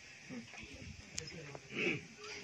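A quiet pause between recited phrases, picked up through the microphone: faint low voices and small noises from the gathering, with one thin click and a short, louder voice sound near the end.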